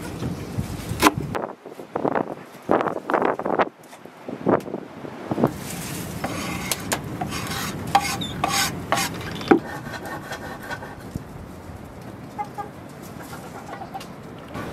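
Kitchen knife chopping fresh herbs on a wooden chopping board in quick uneven strokes, then scraping the chopped leaves off the board into a metal tray. Later a chicken clucks briefly over a steady outdoor hiss.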